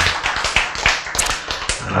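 Audience clapping, many quick irregular claps, with laughter.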